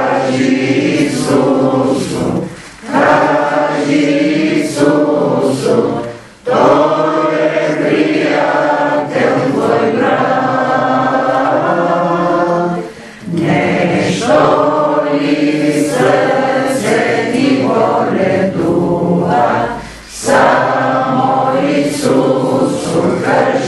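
A group of voices singing a hymn together, in long held phrases with short breaks between lines.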